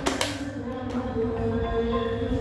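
A sharp click as the iRobot Roomba e5 robot vacuum's button is pressed to start it, then held musical tones over a low rumble of background music.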